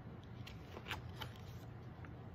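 Paper pages of a picture book being handled and turned: a few short, crisp rustles and ticks.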